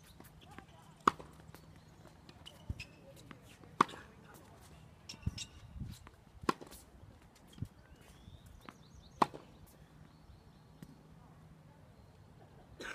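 Tennis ball struck hard with a racket four times, forehands about every two and a half seconds, with quieter thuds between the hits.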